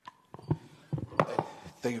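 A microphone being handled as it comes on: a handful of sharp knocks and bumps about a quarter to half a second apart, with a man starting to speak near the end.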